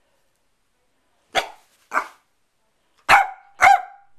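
A young corgi barking four times in two pairs, the second pair louder.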